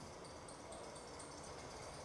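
Quiet, steady background noise with no distinct sounds: room tone.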